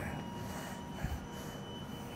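Workshop room tone: a low, steady background hum with faint steady tones, and a single faint knock about a second in.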